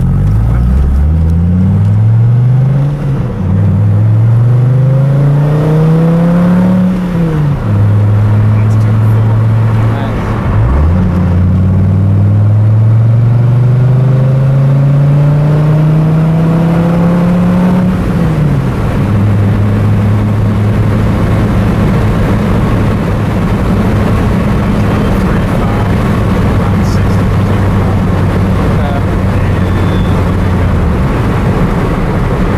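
Dodge Viper SRT-10's V10 engine heard from inside the cabin, pulling hard through the gears. Its pitch climbs in several long rises, each ending in a sudden drop at an upshift. From about two-thirds of the way in it holds a steady drone at cruising speed.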